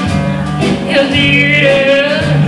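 Live rockabilly band playing, with a woman singing over acoustic and electric guitars and a steady bass line; she holds a long note in the second half.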